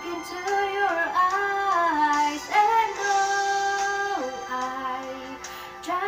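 A woman singing a slow ballad, drawing out the words in long held notes that slide from one pitch to the next; a long steady note in the middle drops to a lower one about four seconds in.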